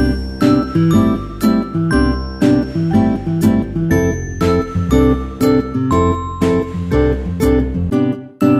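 Background music: plucked guitar-like notes over a steady beat of about two strikes a second, with a light jingling sound.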